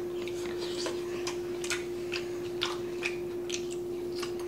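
Close-miked chewing and mouth sounds of people eating: irregular wet clicks and smacks, several a second, over a steady low hum.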